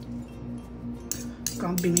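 A metal spoon clinks against a ceramic bowl a few times, starting just after a second in, over steady background music. A voice begins near the end.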